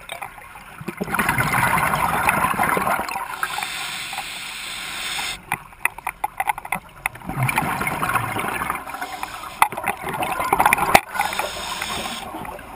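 Scuba diver breathing through a regulator underwater: exhaled bubbles rush and gurgle in long surges, about three breaths, with sharp clicks in between.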